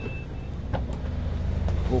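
A 2021 Mazda CX-5's power liftgate being released from its button: a short high beep near the start, then a faint click or two, over a low steady hum.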